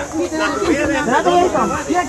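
Several people's voices overlapping, talking and calling at once, over a steady hiss.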